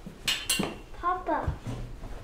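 Two sharp clinks in quick succession, then a short wordless voice sound with a bending pitch about a second in.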